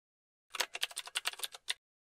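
Typing sound effect: a quick run of about a dozen keystroke clicks. They start half a second in and stop abruptly after just over a second, as on-screen text is typed out letter by letter.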